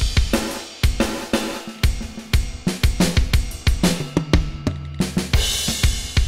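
Sampled rock drum kit from the Rock Drum Machine 2 iPad app playing a beat at 120 BPM, with kick, snare, hi-hat and cymbal hits. The snare sample is swapped for a different one partway through as it plays.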